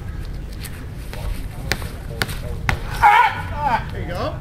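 Hammer throw in progress: four sharp knocks about half a second apart during the thrower's turns, then a loud yell about three seconds in, the loudest sound of the throw.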